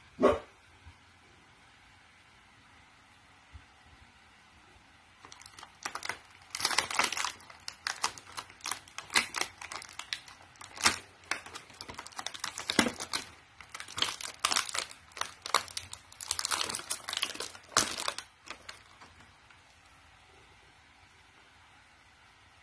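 A single sharp plastic click right at the start. Then, from about five seconds in, a long run of crinkling and crackling of plastic toy packaging in quick irregular bursts, which stops a few seconds before the end.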